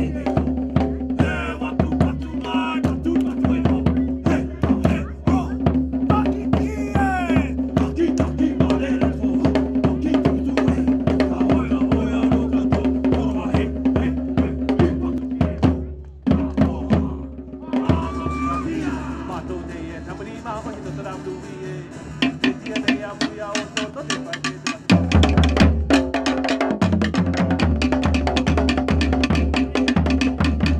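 Polynesian drumming music with fast, dense drum and log-drum strikes over a sustained low tone. It dips briefly about halfway through, runs quieter for several seconds, then the drumming comes back loud near the end.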